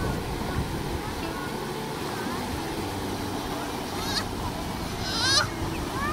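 Creek water running steadily over a small rocky cascade. Near the end a child's high-pitched squeal or call comes twice, the second louder.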